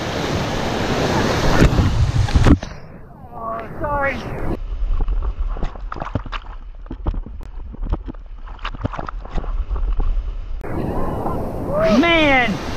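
Whitewater rushing loudly as a raft drives into a rapid. About two and a half seconds in the sound suddenly goes muffled as a wave swamps the camera: gurgling water with scattered knocks and brief muffled shouts. The open rush of the rapid returns near the end.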